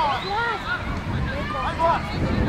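Several voices calling out during a youth football match, over a low rumble of wind on the microphone.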